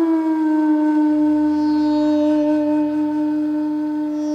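Bansuri, a bamboo transverse flute, holding one long sustained note almost steady in pitch in a raag. A soft drone sits underneath.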